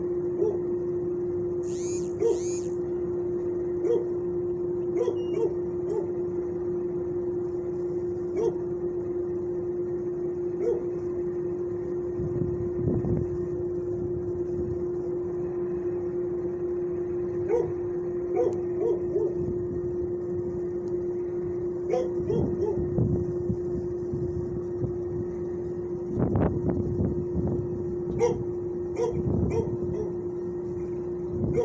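Dogs barking intermittently over a steady low hum, with two brief high-pitched squeaks about two seconds in.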